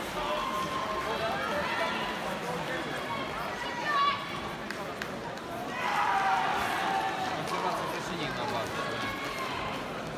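Indistinct voices shouting and calling in a sports hall during a taekwon-do sparring bout, with a short sharp sound about four seconds in and a louder burst of shouting about six seconds in.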